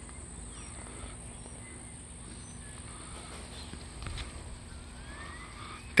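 Quiet backyard ambience: a steady high-pitched insect drone with a few faint short chirps and a soft bump about four seconds in.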